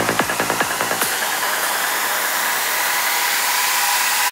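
Psytrance outro: the kick drum and rolling bassline play for about a second, then drop out. A steady hissing white-noise wash from the synths is left on its own.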